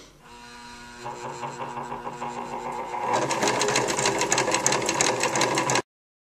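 Electric sewing machine stitching narrow single-fold bias tape through a tape binding foot. It runs slowly at first with a steady hum, speeds up about three seconds in to a fast, even rattle of stitches, and cuts off suddenly near the end.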